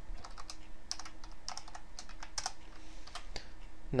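Typing on a computer keyboard: irregular keystrokes, a few a second, with short pauses between runs.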